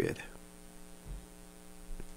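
Steady electrical hum with a row of evenly spaced overtones, typical of mains hum picked up by a recording setup, with a faint low bump about a second in.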